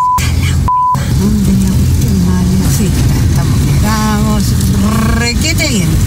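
Two short censor bleeps in the first second, the second one longer, covering a curse. After them a woman talks over the steady low road-and-engine rumble inside a moving car.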